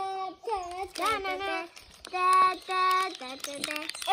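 A child's voice singing a short wordless tune, with a few notes held steady for about half a second each.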